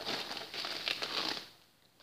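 Crinkly rustling of a cross-stitch project being handled, lasting about a second and a half.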